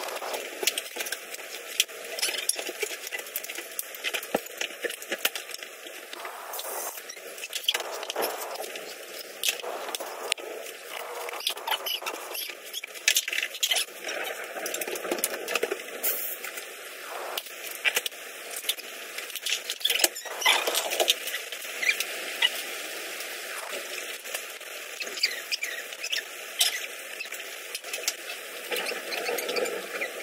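Irregular small clicks, taps and scrapes of plastic and wire parts being handled and fitted together as a 1984 Britânia B30 L desk fan is reassembled, including its wire grille.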